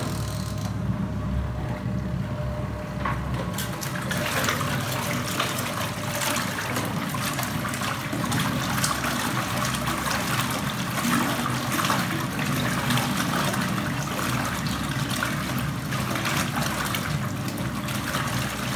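Portable single-tub washing machine running its wash cycle: the motor hums steadily while water and clothes swirl in the tub.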